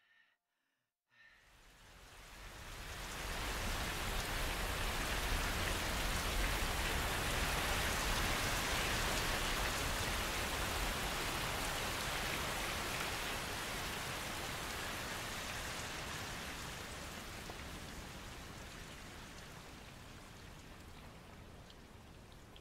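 Rain falling. It fades in after about a second of near silence, holds steady, then slowly dies away toward the end.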